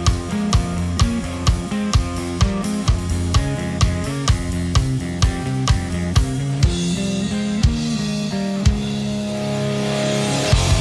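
Rock song intro playing from a mix: a steady drum beat about twice a second under clean guitar and a 12-string part. From about seven seconds in the drum hits thin out and a flanged cymbal swell builds, the transition into the heavy guitars.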